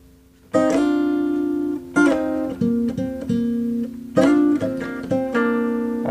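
Steel-string acoustic guitar playing a short picked melody phrase, two strings sounded together on each note. It starts about half a second in, with a note plucked roughly every half second to second.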